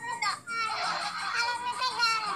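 A high-pitched, childlike voice talking animatedly, with a short pause just before half a second in.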